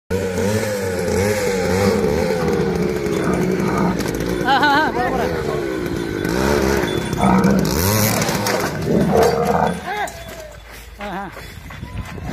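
Motorcycle engine running and revving unevenly while people shout. The engine sound stops about ten seconds in, leaving only voices.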